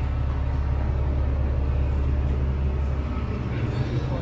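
Steady low rumble of downtown street traffic, with no sudden events standing out.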